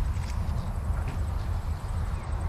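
Wind buffeting the microphone outdoors, a steady uneven low rumble, with a few faint light ticks and rustles on top.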